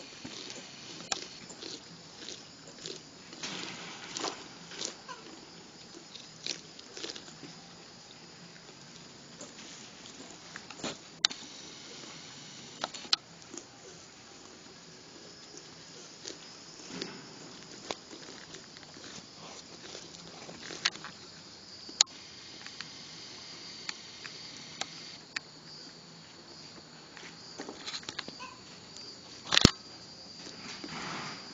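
Kangaroos and a muntjac fawn eating corn on the cob on grass: irregular soft crunches and clicks of chewing and nibbling, with a few sharper clicks, the loudest near the end. A faint steady high-pitched hum runs underneath.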